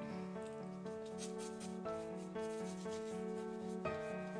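Soft scratchy rubbing of a paintbrush working a watercolour wash on paper, over background music with a repeating melody.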